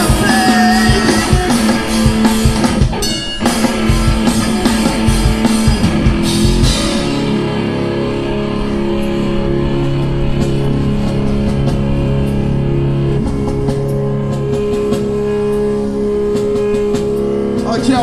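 Live rock duo, a Telecaster-style electric guitar and a drum kit, playing loud and full. About seven seconds in the drums stop and a held electric guitar chord rings on steadily, ending the song.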